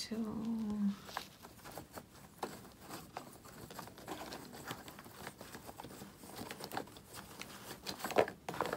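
Loose wax crayons clicking and rattling against each other as a hand rummages through a cardboard box of them, an irregular run of small clicks.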